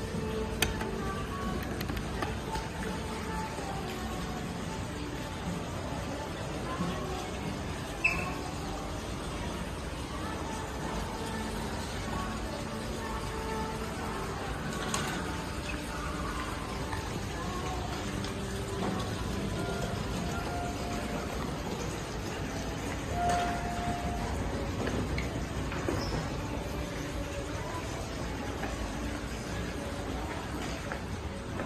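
Indoor lobby ambience: faint background music and distant voices over a steady low rumble of building noise, with a few small clicks and a brief clear tone about three-quarters of the way through.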